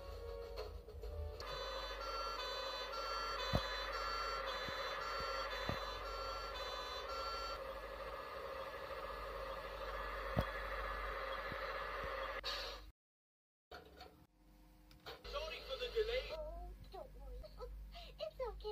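A cartoon fire engine's two-tone siren repeats for about six seconds over a steady engine hum, played off a TV. The hum then cuts off. After a brief silence, cartoon voices and music follow.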